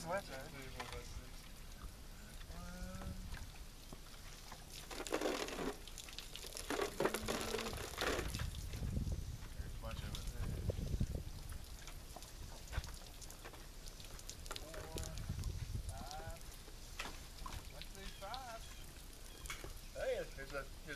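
Water pouring and splashing out of shot plastic water jugs as they are handled and emptied, in two louder rushes about five and seven seconds in, with quiet talk underneath.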